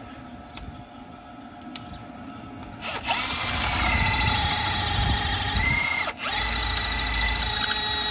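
Cordless rotary hammer drill boring into a brick wall: it starts about three seconds in with a steady motor whine, stops briefly around six seconds, then runs on. The battery is thought to be running weak.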